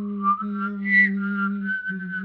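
One person whistling a melody while holding a low sung note at the same time. The steady voice drone breaks off twice for a moment. Above it the whistled tune climbs in pitch, with its loudest, highest note about a second in.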